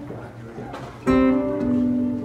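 Live band music with guitar: a quieter passage, then about a second in a guitar chord is struck loudly and left ringing.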